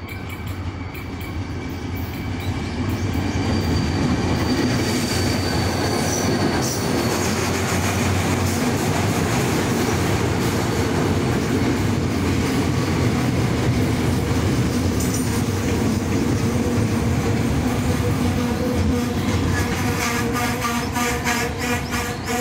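Diesel-hauled Korail Mugunghwa-ho passenger train pulling into a station and rolling past at close range, growing louder over the first four seconds and then a steady heavy rumble of passing coaches. A thin high squeal sounds in the first few seconds, and rhythmic clacking of wheels over rail joints comes near the end as the last coach goes by.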